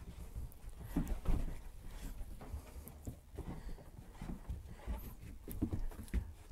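English springer spaniel searching among cardboard boxes on a carpeted floor: scattered light patter of paws, sniffing and soft knocks against the boxes, the loudest knock a little over a second in.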